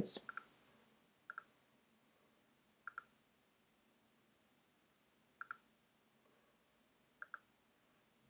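Computer mouse clicked four times, each click a quick pair of sharp ticks (button press and release), spaced a second or two apart over near silence.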